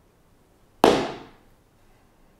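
A Zen teacher's wooden staff struck down once: a single sharp crack about a second in that dies away within half a second.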